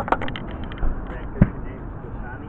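A quick run of sharp taps, then one heavier knock about a second and a half in, over steady outdoor background noise.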